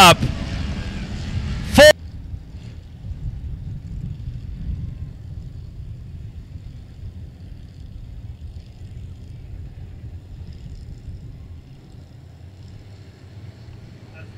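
Faint, steady low rumble of a field of dirt-track Limited Modified race cars' engines rolling around the oval in formation before the start.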